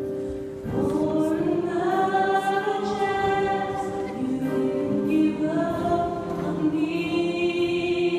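Gospel choir of mixed voices singing together in long, held chords, a new phrase coming in under a second in, with the reverberation of a church.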